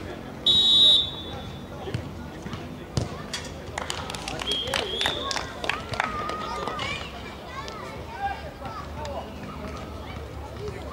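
A referee's whistle blows once, short and shrill, about half a second in, for a set-piece kick. About three seconds in the ball is struck with a sharp thud, and players' voices shout from about four seconds on.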